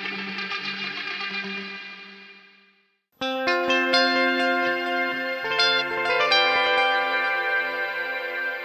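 Electric guitar run through Colortone Lo-Fi Delay and Spring Reverb pedals. One passage fades away over about three seconds, there is a brief silence, and then a new passage of picked, ringing notes starts.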